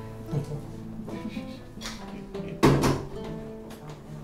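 Acoustic guitar music, plucked notes changing every half second or so. About two-thirds of the way in, a brief loud clatter.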